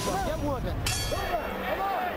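Several men's voices talking over one another in a boxer's corner between rounds, over a low murmur of arena noise.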